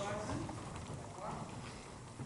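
Indistinct voices talking quietly in a large room, with footsteps and shoe knocks on a wooden dance floor. No music is playing.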